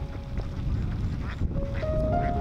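A flock of domestic ducks quacking in short, scattered calls over a steady low rumble, with background music coming in near the end.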